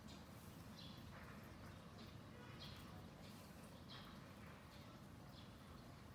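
Near silence: faint room noise with soft, brief rustles every second or so as thread is drawn through a crocheted piece by hand.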